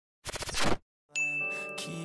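A short crackling burst of glitchy TV-static transition noise, then a pause, then a ringing high ding over a sustained music chord about a second in.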